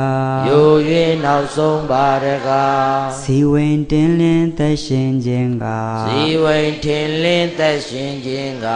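Buddhist monk chanting verses in a slow melody of long, held notes, a single man's voice with brief breaks for breath.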